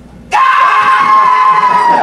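One long, high-pitched scream from a stage actor during a mock fight. It starts suddenly after a brief hush and is held at nearly one pitch.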